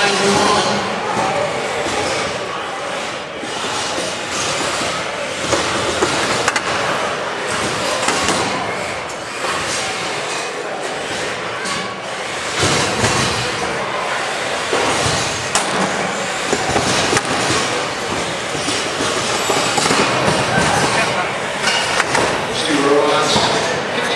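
Thirty-pound combat robots driving and ramming each other in an enclosed arena: a continuous clatter of scraping and repeated knocks and bangs against the floor and walls.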